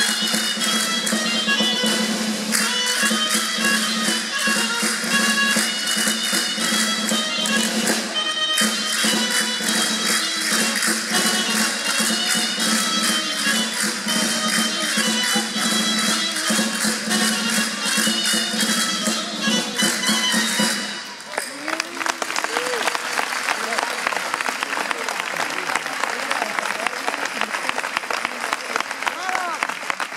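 Live traditional folk music played for a dance, a melody over fast, steady percussion, with a brief break about 8 seconds in. The music stops abruptly about two-thirds of the way through and audience applause follows.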